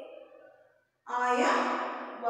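A woman's voice: a syllable trailing off, a short pause about a second in, then a loud, drawn-out vowel with a breathy onset.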